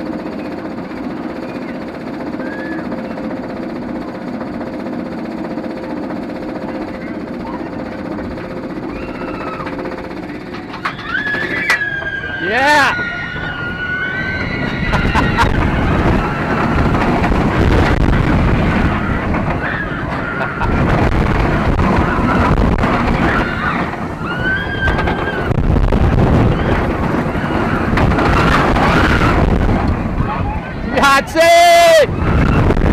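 Steel roller coaster train climbing slowly with a steady mechanical hum, then about eleven seconds in it drops. After that come loud rushing wind and track roar, with riders screaming, a long high scream first and more screams through the run.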